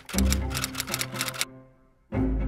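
Typewriter keys striking rapidly, about a dozen strokes in a second and a half, one for each letter of a typed-out title, over background music with low sustained notes. Both stop abruptly about a second and a half in.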